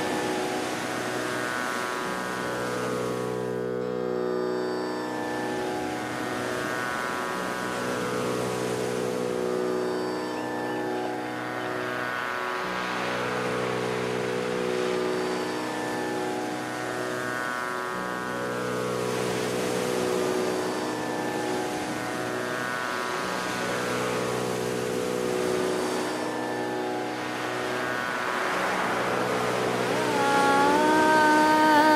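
Tanpura drone: steady, sustained plucked-string tones whose cycle repeats about every five seconds.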